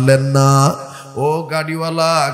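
A man's voice intoning a sermon in a sung, chant-like tune: one long held note that breaks off about three-quarters of a second in, then after a short pause another long held note.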